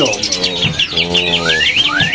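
Caged songbirds chirping: a fast run of high notes, with two rising whistles near the end. A man's brief low hum about a second in.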